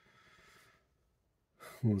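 A man's soft exhaled breath, a faint sigh lasting under a second, followed by a brief pause before his voice returns near the end.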